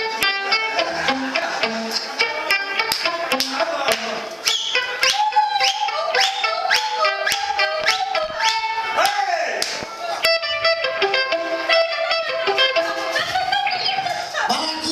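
Live band playing electric guitar and drum kit, with frequent drum and cymbal hits under the guitar lines.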